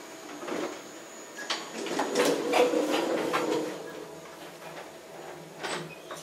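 Elevator doors sliding closed with a mechanical rattle and clicks over a couple of seconds, then a short knock near the end.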